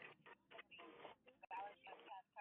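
Faint, muffled talk picked up by a Ring doorbell camera's microphone, coming in short broken snatches that are a little clearer in the second half.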